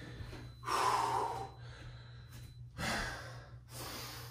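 A man breathing hard during side lunges: two loud, breathy exhalations, the first about a second in and a shorter one near the end.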